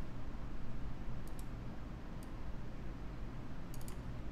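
A handful of faint computer mouse clicks as trend lines are redrawn on a chart, with a small cluster near the end, over a steady low hum of room noise.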